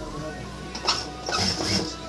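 Background music over an industrial lockstitch sewing machine stitching fabric, its low motor hum coming in at the start.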